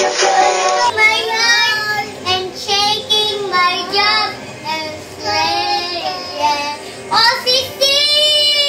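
Toddler girl singing in a high voice, several short phrases with brief pauses between them. In the first second, other music plays and then cuts off.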